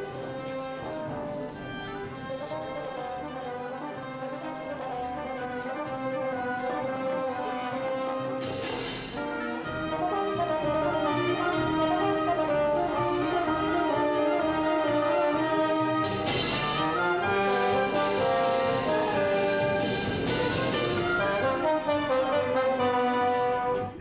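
Orchestral music led by brass (trombones, horn and trumpets) over strings, louder from about ten seconds in. Two crashes cut through, about eight and sixteen seconds in, followed by a run of quick repeated accents.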